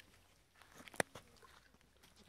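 Horse mouthing a newly fitted metal bit: a single sharp metallic click about a second in, with a few faint smaller clicks around it.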